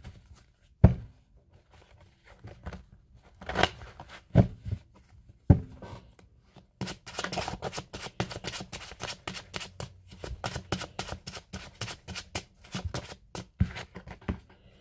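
Tarot deck being shuffled by hand. A few separate sharp knocks of the cards come in the first half. Then, about seven seconds in, a quick, continuous run of card-on-card clicks begins.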